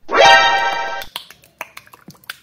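A short, loud musical sound effect: a pitched tone that slides up at the start, holds for about a second and cuts off abruptly. After it come a few soft clicks of the slime and plastic cup being handled.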